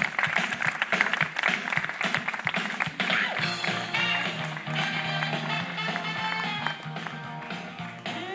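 Wedding guests clapping, with music coming in about three seconds in: held notes over a steady low bass line, the recessional after the couple is pronounced husband and wife.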